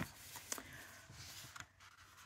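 Faint rustle of a sheet of scrapbook paper being handled and slid on a cutting mat, with one light click about half a second in.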